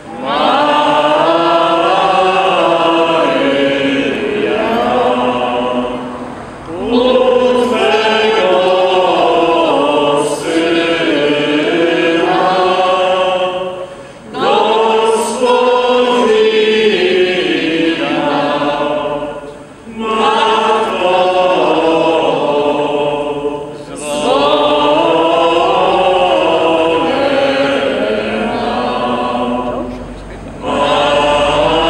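A group of voices singing a Polish religious hymn together, in phrases a few seconds long with short breaks between them.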